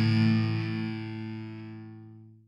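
A distorted electric guitar chord in a death metal recording, held and ringing out, fading steadily with its higher tones dying first.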